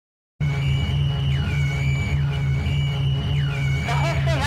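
Dark electronic intro music with a pulsing low drone, starting about half a second in. Over it, high thin tones repeatedly step down in pitch and back up. Warbling, gliding sounds come in near the end.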